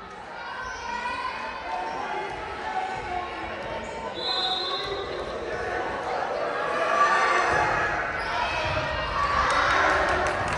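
Volleyball rally in an echoing gymnasium: many spectators' and players' voices with the knocks of the ball being hit, the voices swelling in the second half. A short high steady tone sounds about four seconds in.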